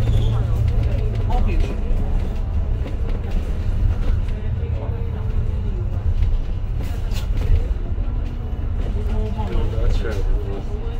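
Double-decker bus's engine and running gear drumming steadily with road noise as the bus drives, heard inside the upper deck, with indistinct voices now and then.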